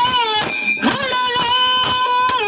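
A dollina pada folk song sung into a microphone through a loudspeaker, with long held notes that waver and slide in pitch. A few sharp drum strikes land across it.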